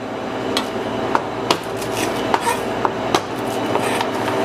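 Kitchen knife chopping wrapped hard candies (Jolly Ranchers) in half on a plastic cutting board: a series of sharp knocks, roughly one every half second to second, over a steady hum.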